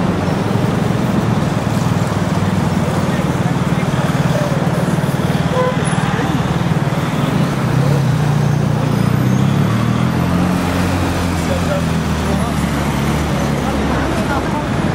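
City street traffic with a vehicle engine running close by, its note rising slightly from about eight seconds in, over a steady wash of traffic noise and untranscribed voices.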